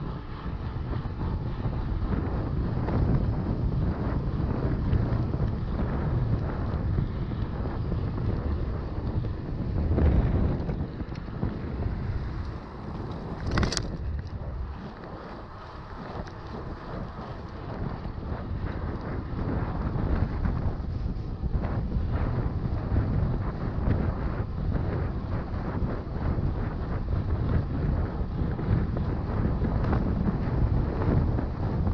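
Wind buffeting the microphone of a GoPro Hero 6 Black on a moving mountain bike, a steady rush with a deep rumble underneath. A single sharp click comes just before fourteen seconds in, and the rush eases for a few seconds after it before building again.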